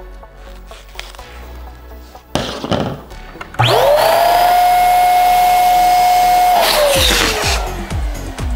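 Latex balloons rubbing and rustling as they are handled. A little over three seconds in, an electric balloon inflator starts with a quickly rising whine and runs steadily for about three seconds, filling a double-stuffed latex balloon. It then winds down with a slowly falling pitch once switched off.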